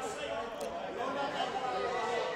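Overlapping chatter of many people talking at once in a parliamentary chamber, with no single voice standing out.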